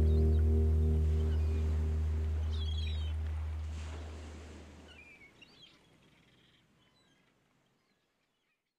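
The last strummed acoustic guitar chord of the song rings out and fades away, dying to silence about five or six seconds in. A few faint bird chirps sound over the fade.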